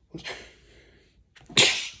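A man sneezes: a breath drawn in, then one sharp, loud sneeze about one and a half seconds in.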